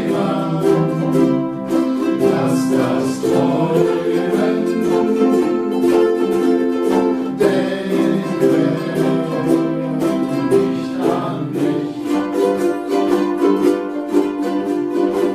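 A group of ukuleles strumming chords together, with men's voices singing along in long held notes.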